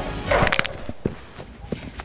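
A person dropping from a ladder onto a grass lawn: a short rustling thud about half a second in, then a few faint soft knocks, over quiet background music.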